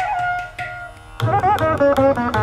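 Carnatic instrumental music. A bamboo flute note with slides fades out about a second in. Then a string instrument takes up a fast, ornamented phrase over drum strokes.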